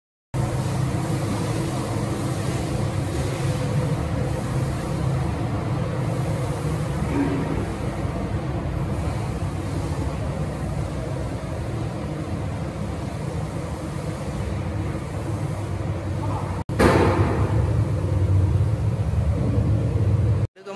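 Steady low rumble with a faint hum: background noise inside a large bus terminus building. It breaks off briefly near the end and comes back a little louder.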